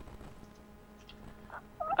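Pause in the conversation: faint room tone with a low, steady electrical hum, and a voice starting to speak near the end.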